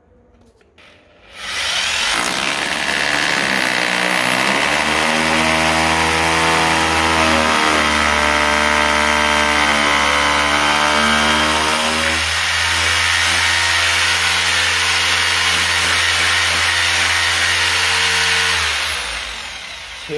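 Corded electric drill with a 24 mm bit boring into a floor tile, starting about a second and a half in, running steadily under load with its pitch wavering as the bit bites, then winding down just before the end.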